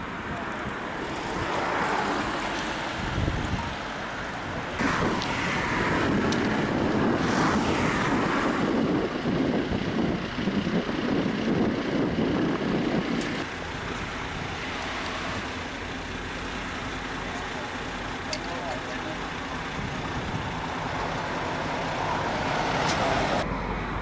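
Roadside traffic going past, louder for several seconds in the first half and quieter after, with wind on the microphone.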